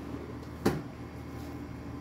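A single short knock a little over half a second in, over a faint steady room hum: a coloring book being handled on the table.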